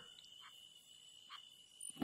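Near silence in a pause between spoken phrases, with a faint steady high-pitched tone.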